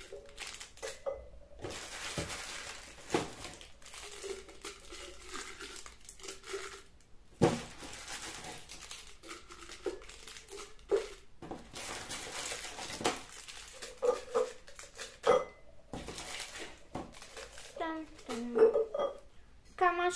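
Wrapped Raffaello candies handled and dropped into glass jars. Their wrappers and packaging crinkle, with a few sharp knocks and clinks as candies land against the glass.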